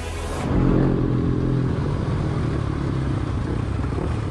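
A motor vehicle engine running loudly, coming in about half a second in as the music cuts away.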